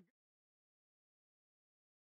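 Digital silence: the sound track is blank.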